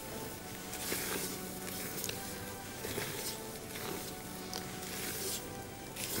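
Soft background music, with quiet repeated squishing strokes of a spatula gently folding melted butter into génoise batter in a stainless steel bowl.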